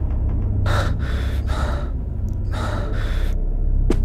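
A person breathing hard after a fight, several heavy breaths in and out, over a low steady hum.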